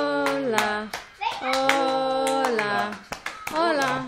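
Singing with long held notes, mixed with sharp claps about three a second.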